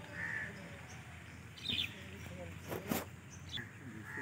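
Faint birdsong: a few short calls and chirps, with one short knock about three seconds in.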